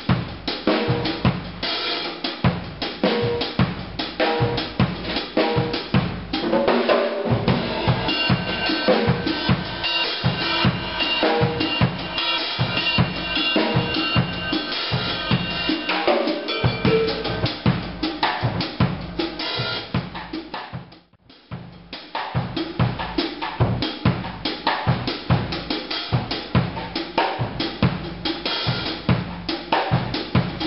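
Acoustic drum kit played solo in a chacarera rhythm, the Argentine folk rhythm in 6/8, adapted for drums: continuous strokes on snare, toms, bass drum and cymbals. The playing breaks off for a moment about two-thirds of the way through, then picks up again.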